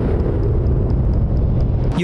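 Tank engine running with a steady, loud low rumble.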